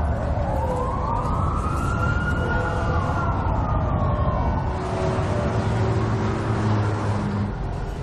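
An emergency-vehicle siren sounding one slow wail: its pitch rises over the first two seconds or so, then falls away by about five seconds in. A low steady hum runs beneath it.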